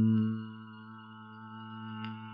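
A man holding a low, steady meditative hum, an 'om'-like drone imitating a resonance tone; it drops in loudness about half a second in and is held on at one pitch.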